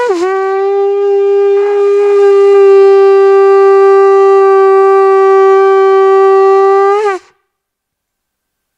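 A conch shell (shankh) blown in one long held note, the customary sounding that opens an auspicious programme. The note lifts briefly in pitch and stops about seven seconds in.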